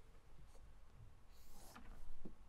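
Dry-erase marker drawing a line on a whiteboard: one faint stroke about one and a half seconds in, over quiet room tone.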